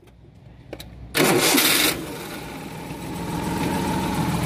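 Maruti Suzuki three-cylinder petrol engine with distributor ignition starting up: a short, loud burst about a second in, then it settles into steady running at idle.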